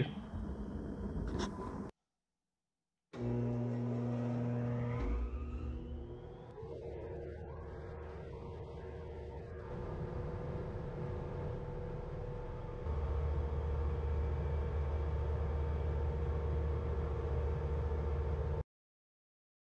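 Stationary thickness planer's motor starting up with a rising whine, then running steadily, with a louder low hum coming in near the end. A short break of near silence falls in the first few seconds.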